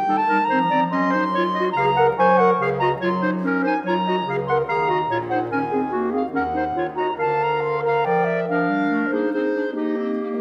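A clarinet quartet, with a bass clarinet among its voices, plays several interweaving lines at once: held notes and stepwise moving figures over a low bass part.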